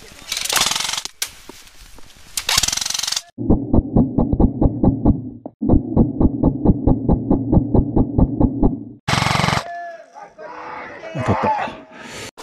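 Electric airsoft rifle (XM177E1 replica) firing on full auto in two long strings of rapid, even shots, about six a second, with a brief pause between them. Before the shooting, dry reeds rustle against the gun and gear.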